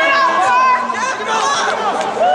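Several people's voices shouting and calling over one another during play: sideline chatter and yelling at a rugby match, with no words clear.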